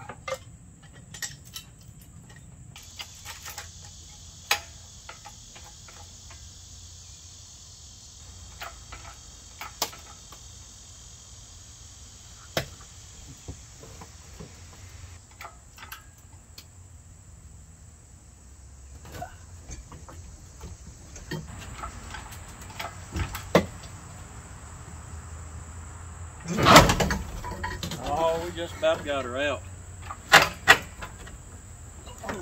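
Scattered metallic clinks and knocks of an engine hoist's chain and hooks being rigged to a car engine, over a steady high chirring of crickets. Near the end comes a loud clank, then a wavering creak for a few seconds.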